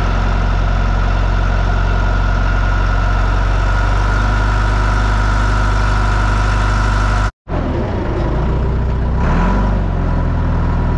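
Diesel engine of a yellow heavy construction machine running steadily, heard close up from on top of its engine hood beside the exhaust stack. About seven seconds in the sound cuts out for a moment, then engine noise resumes and rises briefly in pitch near the end.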